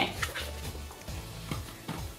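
Background music with a steady low bass line, with a few faint clicks of a plastic toy container being handled.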